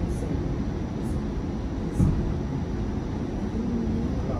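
Steady low rumble of a moving articulated transit vehicle heard from inside the passenger cabin, with a single thump about two seconds in.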